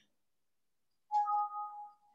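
A short electronic notification chime about a second in: a couple of clear, steady tones sounding together, then fading out.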